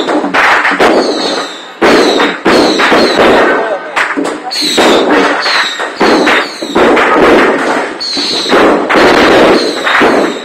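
Strings of firecrackers going off very loudly in repeated crackling bursts, mixed with the beating of hand drums from a temple procession troupe.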